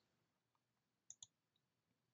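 Near silence with two faint clicks in quick succession about a second in: a computer click advancing the presentation slide.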